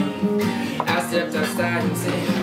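Acoustic guitar strumming chords.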